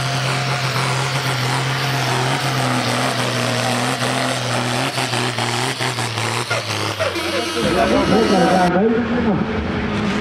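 A pulling tractor's engine running hard at steady high revs while dragging a weight-transfer sled down the track, its note sagging slightly as the pull bogs down. The engine note ends about three-quarters of the way through, and a man's voice takes over.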